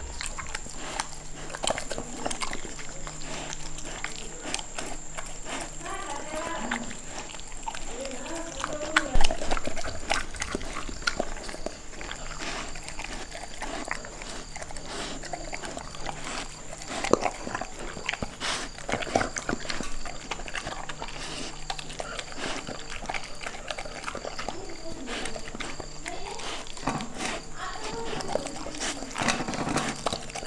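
Golden retriever puppy eating soft cooked fish eggs from a steel bowl: wet chewing and licking with many small clicks of teeth and tongue against the metal. A louder knock comes about nine seconds in and another about seventeen seconds in.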